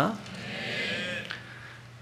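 A faint, high-pitched wavering cry lasting about a second, over a steady low hum.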